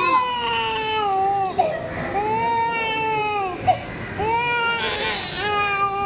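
Infant crying hard in three long wails, each about a second and a half and falling in pitch at its end, with quick breaths between, in distress as its head is shaved with a razor.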